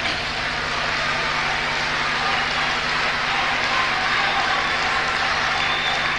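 Large audience applauding steadily, an even wash of many hands clapping, with a faint low hum underneath.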